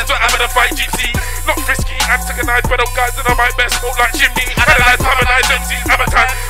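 A man rapping into a microphone over a loud hip-hop beat, with a deep bass line and a fast high hi-hat pattern.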